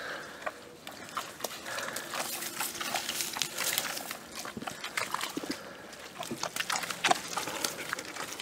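Two dogs, one a German Shepherd, moving through wet, deep mud: a steady scatter of short wet steps and taps as their paws sink in and pull out.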